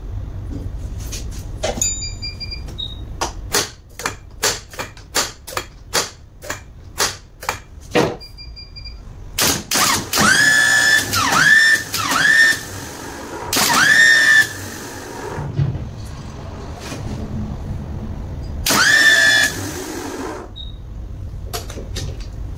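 24-volt truck starter motor being bench-tested with a jumper lead. It first gives a run of sharp clicks, about two a second, then several short bursts of running with a high-pitched squealing whine, each a second or two long.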